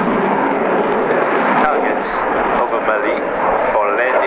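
Dassault Rafale's twin Snecma M88-2 turbofans in flight overhead, a loud, steady jet noise, with a public-address commentator's voice faintly over it.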